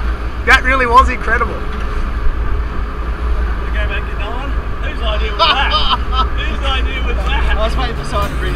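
Steady low rumble of a fishing boat underway, with men's voices speaking over it near the start and again in the second half.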